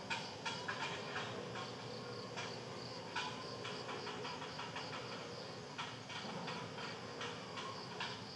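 Steady high-pitched insect drone with a low background hum, broken by many short, irregular clicks.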